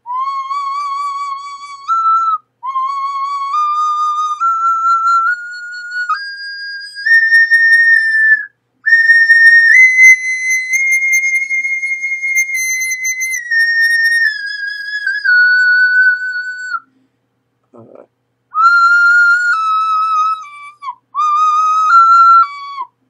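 A 6-hole soprano ocarina in C played slowly and a little hesitantly: a pure, flute-like tone stepping up a scale one held note at a time to a long high note in the middle, then back down. After a short pause near the end, a few more notes follow.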